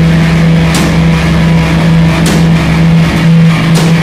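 Live rock band playing a loud, droning passage: a sustained low note held steady, with a drum hit about every second and a half.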